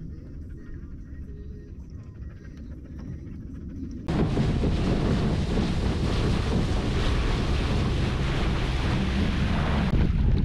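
Muffled underwater sound from a camera below the surface. About four seconds in it cuts to loud wind buffeting the microphone and water rushing past a small boat under way on choppy water.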